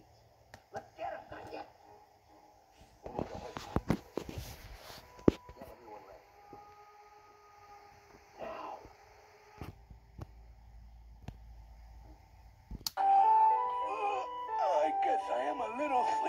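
Cartoon soundtrack heard from a TV: scattered short sound effects and brief voice sounds, then music with a melody and chords starts suddenly and loudly about three-quarters of the way in.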